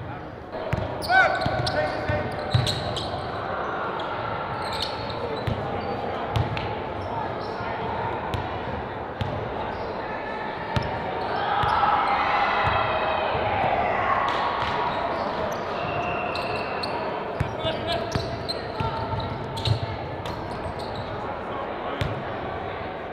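Basketballs bouncing on a hardwood gym floor, with short thumps scattered throughout, under the indistinct, overlapping voices of players and coaches.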